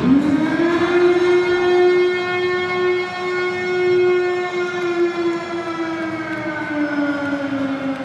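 A long, loud siren-like wail: it swoops up at the start, holds one steady pitch for about six seconds, then slowly falls away near the end.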